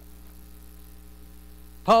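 Steady low electrical hum through the sound system during a pause in speech, with a man's voice starting again near the end.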